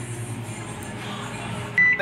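A Daewoo microwave oven running with a steady low hum, then a short electronic beep near the end.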